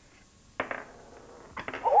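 A single light click about half a second in, a pound coin set down on a cloth-covered table, followed by a few faint taps among the coins.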